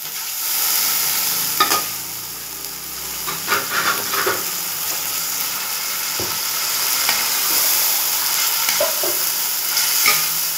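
Diced raw boneless chicken sizzling steadily as it goes into hot oil in a steel pan, the sizzle swelling just after it lands. The chicken is then stirred, with a few short scrapes and knocks of the spoon against the pan.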